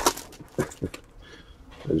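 Foil trading-card pack wrapper crinkling as it is torn open and the cards are slid out, with a couple of short crinkles in the first second.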